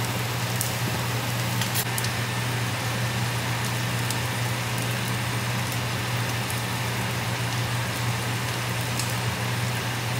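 Steady sizzling of food frying in pans, steak bites and melted butter, with a constant low hum underneath. A few faint clicks come in the first couple of seconds.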